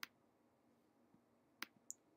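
Near silence broken by two sharp computer mouse clicks, one at the start and one about one and a half seconds in, with a faint tick just after.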